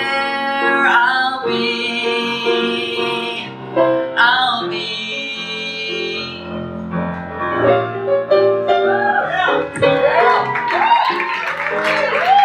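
Live song with piano accompaniment: a young male singer holds two long wordless notes over piano chords. In the second half the piano takes over with quick runs and sharply struck chords.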